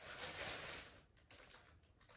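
Faint crinkling of a small clear plastic bag of rubber bands being turned over in the hands, fading after about a second to a few light ticks.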